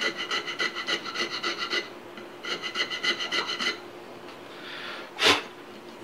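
Rasp filing the inside of a wooden rifle buttstock's inletting in quick, even back-and-forth strokes, in two runs with a short pause between, relieving high spots so the receiver fits. A single sharp knock near the end.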